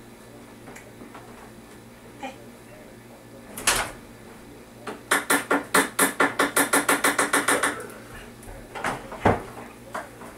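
A door being worked: a sharp knock, then a fast even run of about twenty short rattling pulses over nearly three seconds, and a deep thump near the end as it shuts.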